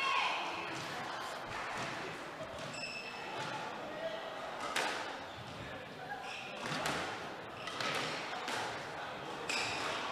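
Squash ball being hit back and forth in a rally: sharp racket strikes and ball cracks off the court walls, several in the second half.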